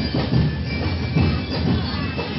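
Ati-Atihan street percussion: drums pounding a repeating beat amid a dense, noisy crowd.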